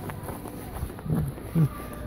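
Footsteps walking over gravel and then onto wooden crossing planks, with two brief murmured voice sounds, one about a second in and one near the end.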